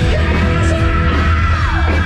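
Rock band playing loud through the stage PA, with distorted electric guitars, drums and bass. A singer holds a high yelled note that slides down sharply near the end.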